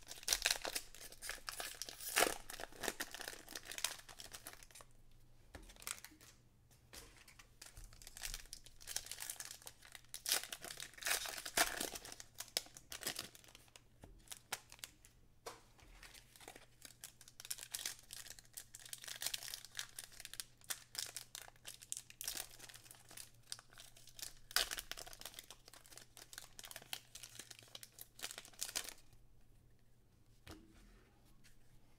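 Foil Topps baseball card pack wrappers crinkling and being torn open by hand, in irregular bursts of rustling with short pauses.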